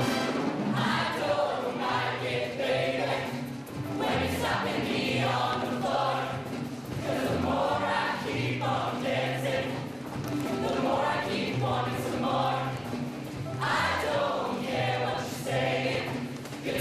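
Mixed show choir of male and female voices singing together over instrumental backing with a steady bass line.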